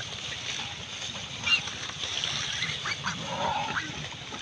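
A herd of pigs rooting through floating water hyacinth, with a wet rustling and splashing of the plants. Several short animal calls sound over it, the loudest about one and a half seconds in.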